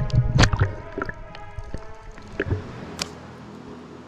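Background music with held tones, over water sloshing and splashing at the ocean surface against a waterproof action camera, with several sharp splashes in the first second. The sound grows quieter from about a second in.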